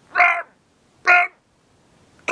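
A man's voice giving two short, harsh shouted 'ah!' cries about a second apart, a mock cry of alarm.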